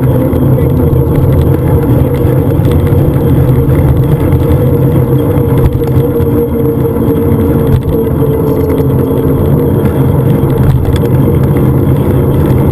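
Steady, loud wind rumble and tyre noise on a bicycle-mounted action camera's microphone while riding along asphalt.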